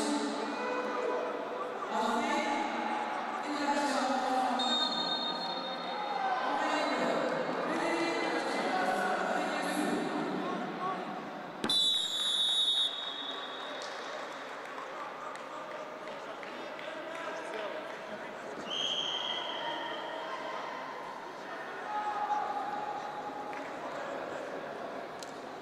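Loud shouting voices of coaches and spectators in a large hall. About halfway through, a referee's whistle blows a sharp blast of about a second, stopping the wrestling. A shorter whistle follows a few seconds later.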